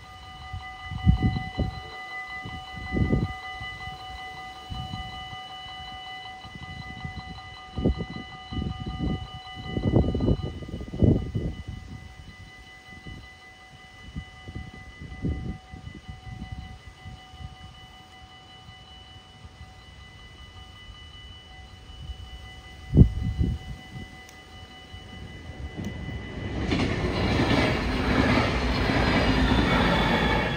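Dutch level-crossing bells ringing steadily, with several low thumps scattered through the first two-thirds. Near the end an NS DDZ double-deck electric train approaches and passes the crossing as a loud, rising rush.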